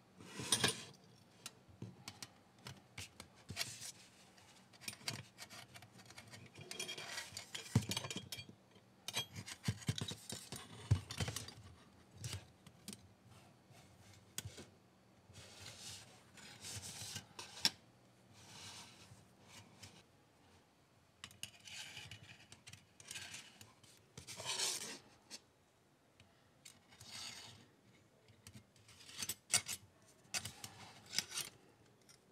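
Handling of a folding sheet-metal camp stove and a braided metal gas hose: scattered light clinks, taps and rubbing scrapes as the panels are fitted and the hose is fed through.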